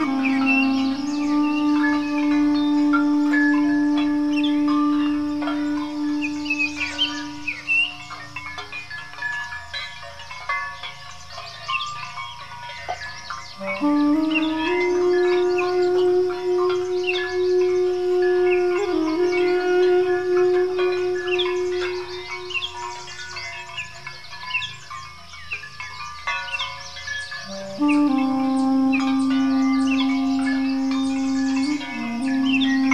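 Armenian duduk playing long, slow held notes, falling silent twice for several seconds and starting again on a higher note, then back on a lower one near the end. Birds chirp throughout.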